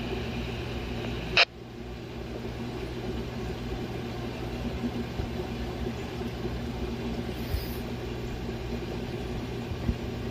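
BTECH handheld two-way radio on a police channel, with the open channel ending about a second and a half in on a short burst of squelch noise as the transmission drops. After that there is only a steady low hum.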